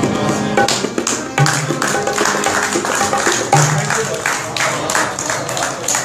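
Live harmonium and tabla playing together: held harmonium notes under a busy run of tabla strokes, with deep bass-drum (bayan) strokes about a second and a half in and again about three and a half seconds in.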